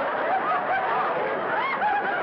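Studio audience laughing, a steady wave of many voices held throughout.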